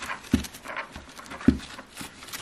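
A Lofree mechanical keyboard with its keycaps removed, being handled during cleaning: its plastic case knocks twice, about a second apart, with a softer brushing sound between the knocks.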